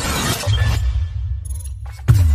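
Cinematic intro sound effect: a bright, noisy burst that fades out, overlapped from about half a second in by a deep bass rumble that cuts off just before the end.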